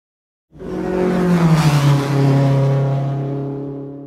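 A car engine passing by at speed. Its pitch drops as it goes past, about a second and a half in, and then it fades away.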